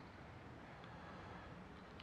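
Near silence: faint, steady background noise with no distinct sound events.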